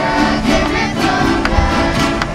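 A live Venezuelan folk string ensemble of cuatros and other small plucked instruments, with a violin and a strapped drum, playing an upbeat tune while voices sing along.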